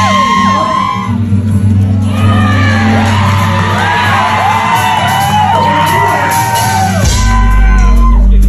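Live rock band playing loudly in a hall, with a crowd shouting and whooping over the music. A deep bass note comes in near the end.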